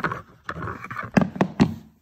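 Handling noise of a pistol and a Kydex holster on a hard floor: a rustle, then three sharp clicks about a quarter second apart.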